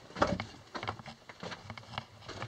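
Footsteps on the loose rock floor of a mine tunnel: a run of irregular soft crunches and knocks, the sharpest one just after the start.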